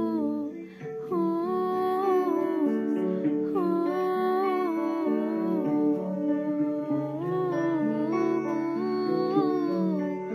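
A woman's voice carrying the melody of a Khasi gospel song in long, gliding notes over an instrumental backing of sustained chords with plucked guitar, with a brief dip for a breath about half a second in.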